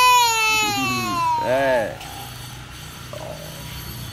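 A toddler's long, loud, high-pitched squeal, held and slowly falling in pitch. It breaks off about a second and a half in with a short rising-and-falling vocal sound, and the rest is much quieter.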